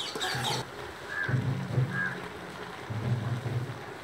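Metal spatula scraping and stirring chicken in an aluminium pot, with frying sizzle. A scrape comes at the start, then low rumbling swells come twice.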